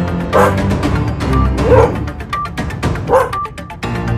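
Music with a steady beat, with a dog barking three times, roughly a second and a half apart.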